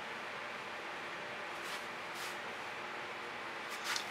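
Steady low background hiss with two soft swishes near the middle: a Princeton Catalyst silicone spatula being drawn through wet acrylic paint on a canvas.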